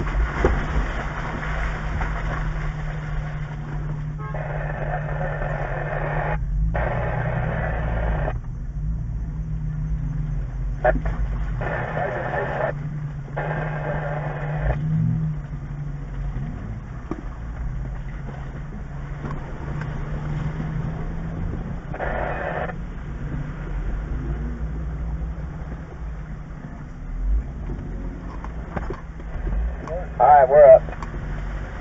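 Jeep Wrangler JK's engine running steadily at crawling speed, heard from the vehicle, while it picks its way along a muddy trail. Muffled voices come and go over it in several stretches.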